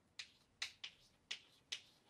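Chalk tapping against a blackboard during writing: five short, sharp, faint ticks at uneven spacing.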